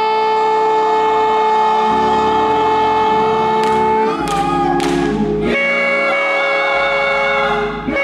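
A choir singing long held chords, moving to a new chord about four seconds in and again about five and a half seconds in.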